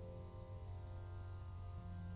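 Quiet ambient music bed of long, slowly changing held tones over a low drone, with a high, steady chirring layered above it.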